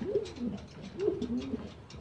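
Domestic fancy pigeon cooing: two low coos, each rising and then dropping, the second about a second after the first.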